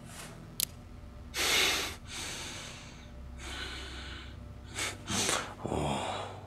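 A man breathing hard in several loud, noisy breaths, the heavy breathing of someone frightened and close to tears, over a low steady hum. A short sharp click sounds about half a second in.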